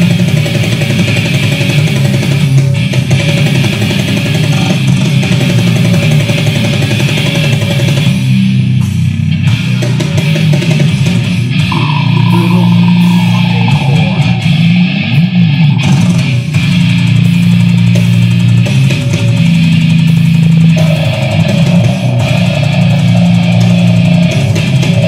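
Slamming porngrind band playing live, loud, with heavily distorted guitar and bass. The sound thins for a couple of seconds about eight seconds in, then resumes at full density.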